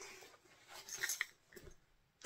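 Soft rustling and two or three small clicks from a knitted sock project and its yarn being handled.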